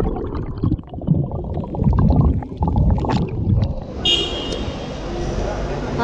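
Muffled underwater rumble and bubbling from a camera held under the sea. About four seconds in it cuts to open-air traffic sound with a high steady tone.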